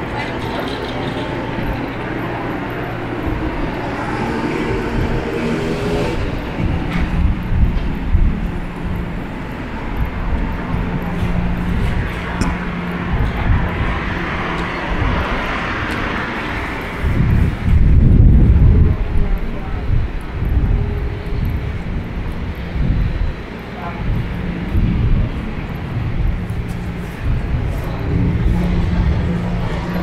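City street ambience: a steady hum of traffic and engines, with passers-by talking. A louder low rumble comes about 18 seconds in.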